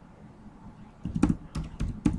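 Computer keyboard being typed on: a quick run of four or five keystroke clicks beginning about a second in, after a quiet first second.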